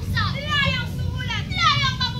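Many young voices of a choral recitation group crying out together in high, sliding pitches, overlapping rather than speaking words in unison.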